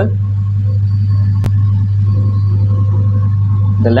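LE 420 optical lens auto edger running steadily with a loud low hum as its grinding wheel cuts the finishing bevel on a plastic lens. A single sharp click comes about one and a half seconds in.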